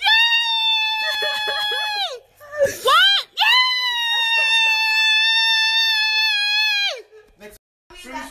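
A girl screaming for joy: a long high scream for about two seconds, a few short rising yelps, then a second long scream of about three and a half seconds that cuts off near the end. These are screams of excitement at reading a college acceptance.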